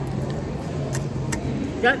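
Steady low hum of a large indoor public space, with two sharp clicks about a second in; a voice starts speaking near the end.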